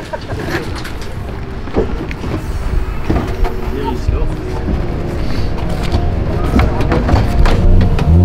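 Background music that grows louder toward the end, over voices.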